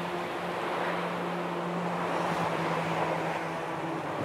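Small waves washing on a sandy beach, a steady surf rush, with a steady low hum underneath.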